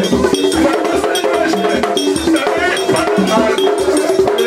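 Haitian Vodou ceremonial music: a man singing into a microphone over drums and a metal bell struck in a steady, repeating beat.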